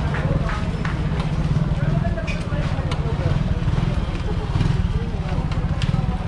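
Busy street sounds: people talking around the stalls over a steady low rumble, with scattered short knocks and clatters.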